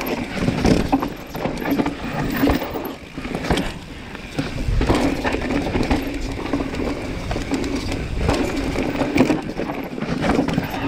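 Commencal Meta mountain bike descending a rocky trail: tyres clattering over rock with sharp knocks and rattles of the bike, choppy at first, settling into a steadier rolling rumble about five seconds in.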